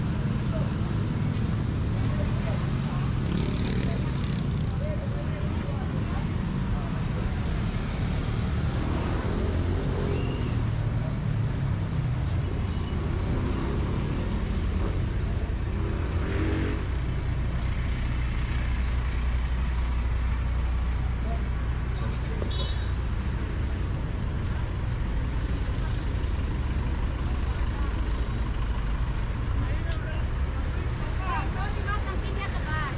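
Roadside traffic: the steady low rumble of motorcycle and minibus engines running and passing close by, with the voices of passersby.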